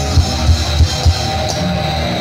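Heavy metal band playing live: drum kit and electric guitar, with four heavy kick-drum beats in the first second or so, then held chords ringing on.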